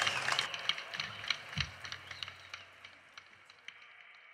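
The tail of a crowd's applause: scattered handclaps thinning out and fading away, with one low thump about one and a half seconds in.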